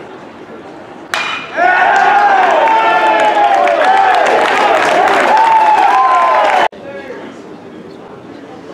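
A metal baseball bat cracks against the ball about a second in. Loud overlapping shouting and yelling from the crowd and dugout follows, and cuts off abruptly near the end.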